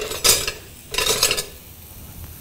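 A metal spoon scraping and clattering against a cooking pan in two short bursts, about a second apart.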